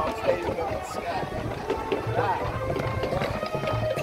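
High-school marching band playing on the field with held notes, heard from the stands over spectators' chatter.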